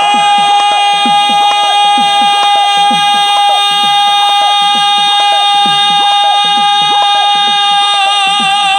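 Dhadi folk music: a male singer holds one long high note over the sarangi, while dhadd hourglass drums beat a steady rhythm of strokes that slide down in pitch, about two a second.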